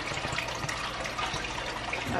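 Steady rushing noise with a low hum beneath it.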